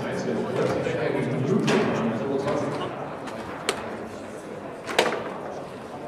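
Murmur of people talking in a large hall, with two sharp knocks about a second and a half apart in the second half; the second knock is the loudest.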